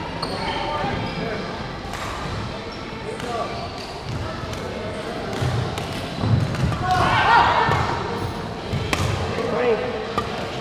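Badminton rallies in a sports hall: rackets striking shuttlecocks in sharp cracks and court shoes squeaking on the wooden floor, with players' voices in the background. A cluster of squeaks comes about seven seconds in.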